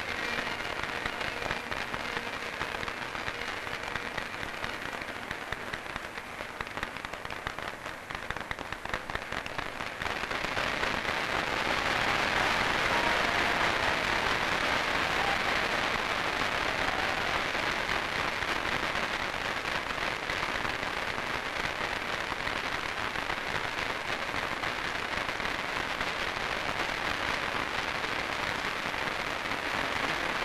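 Applause from a large crowd of diners, a dense steady clapping that swells about ten seconds in and carries on.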